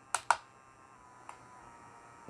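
Two sharp clicks in quick succession, then a fainter click about a second later: the push button on a motorized turntable's base being pressed to change its rotation speed.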